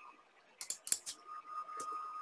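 Quiet computer keyboard typing: a quick run of keystrokes about half a second in and a few more spaced out after, with a faint steady high tone coming in about halfway.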